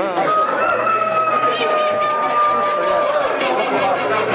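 A rooster crowing once, holding one long even note for nearly three seconds, with people chattering in the background.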